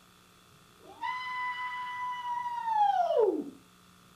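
A single high, eerie wail meant to frighten. It swoops up about a second in, holds one steady note for nearly two seconds, then slides steeply down and dies away.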